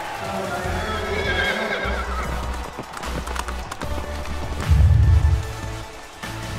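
Logo sting: music with a horse whinnying in the first two seconds and clopping hoofbeats, closing on a deep low boom near the end.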